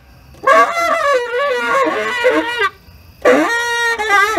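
Tenor saxophone playing free-improvised phrases: a long, pitch-bending phrase starting about half a second in, a short pause, then a second phrase that settles on a held note near the end.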